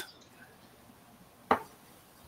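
A single short, sharp knock about one and a half seconds in, as a hard plastic CGC graded-comic case is handled; otherwise quiet.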